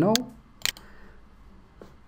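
A computer mouse button clicked once, sharp and short, about two-thirds of a second in, with a fainter click near the end.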